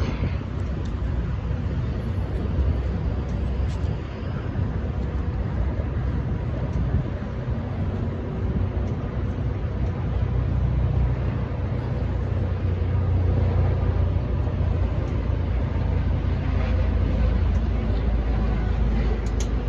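Steady low rumble of road traffic mixed with wind on the microphone, growing louder about ten seconds in.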